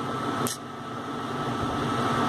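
Steady background hiss and hum with a faint high tone, and a single short click about half a second in, as a calculator key is pressed.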